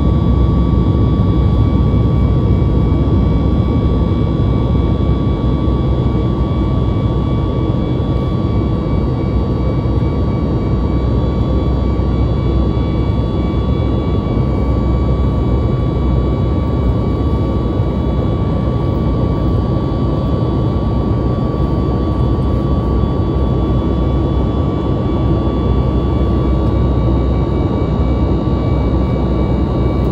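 Cabin noise of a Boeing 737 MAX 8 in flight, heard from a window seat near the engine: the CFM LEAP-1B turbofans run with a steady deep rumble and a thin, steady high whine.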